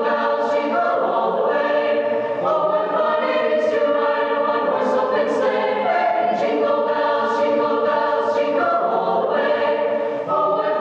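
Mixed-voice high school choir of young men and women singing held chords that change about every second, with the hiss of sung consonants standing out now and then.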